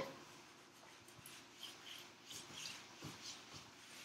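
Faint swishing of a whiteboard eraser wiping the board, in several short, soft strokes.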